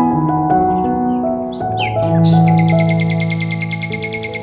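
Slow, calm background music of sustained notes. Bird chirps come in about a second in, followed by a fast, even, high-pitched trill.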